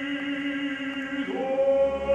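Operatic baritone singing an aria with symphony orchestra accompaniment: a held note gives way to a new, louder note about a second and a half in.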